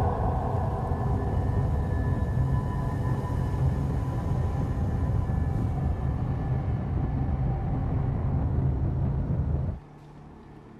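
Heavy continuous low rumble of a control room shaking in a nuclear reactor explosion, film sound design with a faint held tone from the score above it; it cuts off abruptly just before the end.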